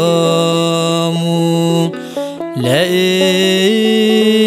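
A male cantor singing Ethiopian/Eritrean Orthodox Yaredic chant (zema) in long held notes with ornamented turns. He breaks off briefly about halfway through, then comes back in on a note that slides upward.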